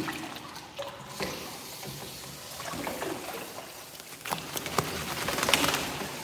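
A border collie's soaked coat being scrubbed and worked by hand in a grooming tub: wet rubbing and sloshing, with a louder burst of splashing near the end.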